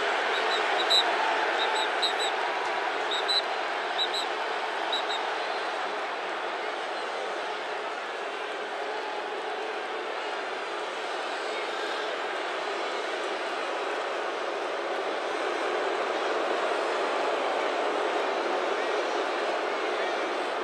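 Steady noise of a large stadium crowd, with a few short, high whistle chirps in the first five seconds.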